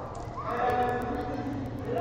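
People's voices, not close to the microphone. One voice rises in pitch about half a second in and is followed by held, sung-out vocal sounds.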